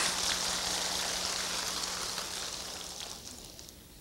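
Large audience laughing after the punchline of a story, the crowd noise dying away over the last second or so.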